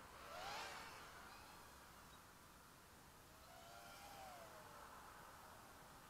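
Faint whine of a small FPV quadcopter's motors, swelling and falling in pitch twice as the throttle changes, over a steady hiss.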